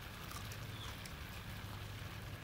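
Faint crunching and chewing of a raw radish, a few soft clicks over a steady low background rumble.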